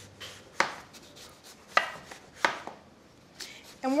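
Chef's knife slicing through an eggplant and knocking on the cutting board: several sharp, unevenly spaced cuts.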